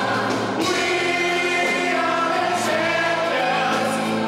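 A choir and a lead singer performing a song live on stage, with long held notes.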